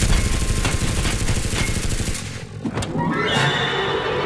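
Film soundtrack: a dense rattle of rapid knocks over a low rumble for about two seconds, which dies away. A sharp crack comes near three seconds in, then orchestral-style music with sustained tones begins.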